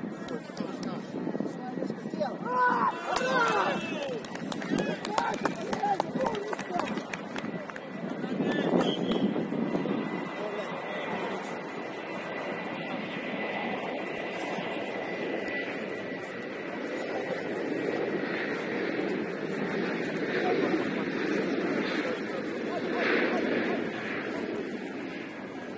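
Players' shouts and calls during a seven-a-side football match, loudest in the first few seconds, over a steady background rumble.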